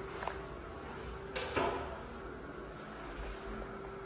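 A light click as an elevator hall call button is pressed, then a sharper knock about a second and a half in, over a faint steady hum.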